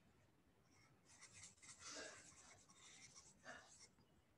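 Faint scratching of a stylus rubbing on a tablet screen in many quick strokes, shading in an area; it starts about a second in and stops just before the end.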